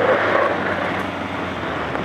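Ford Ranger Raptor pickup, with its 2.0-litre bi-turbo diesel, driving hard across loose gravel: a steady rushing crunch of tyres on gravel with the engine underneath, loudest near the start and easing slightly.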